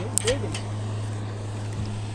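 A steady low hum, with a brief voice sound and a click just after the start.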